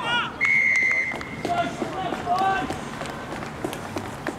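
Referee's whistle: one loud, steady blast about half a second in, lasting under a second, stopping play at a ruck. Players' shouts follow.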